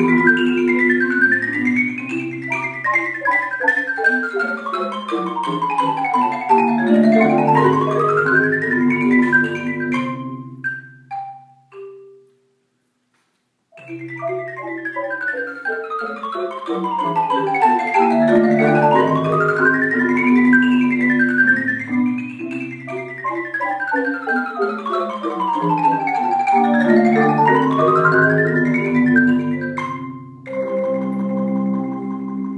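Percussion ensemble on mallet instruments playing fast rising and falling scale runs over low sustained notes. The music dies away about ten seconds in, cuts out completely for about a second, then starts again.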